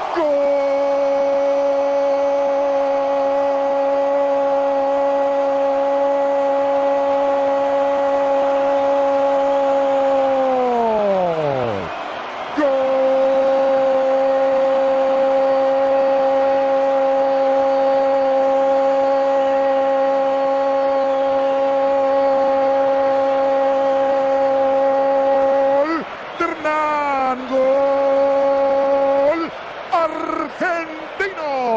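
A football commentator's drawn-out "goooool" cry for a goal, held on one pitch for about ten seconds, then sliding down as his breath gives out. He takes a breath and holds a second long cry for about thirteen seconds, then ends in a few short, wavering calls.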